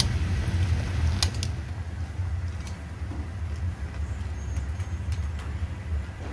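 Steady low rumble of a commercial ramen kitchen around a noodle boiler at a rolling boil, with a few light metal clicks, the clearest a pair about a second in, as steel tongs stir noodles in the mesh noodle baskets.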